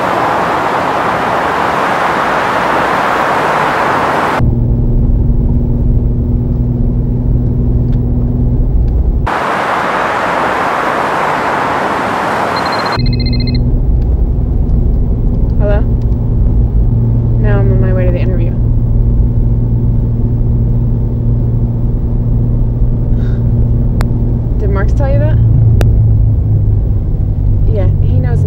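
Freeway traffic noise, alternating with the low engine and road rumble inside a moving car. About 13 s in there is a short beep, followed by short snatches of a voice as a hand works the car's console.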